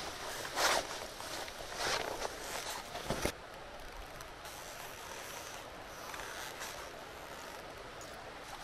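Faint outdoor background hiss, with a few brief scuffing or rustling noises in the first three seconds and a sharp click a little after three seconds in.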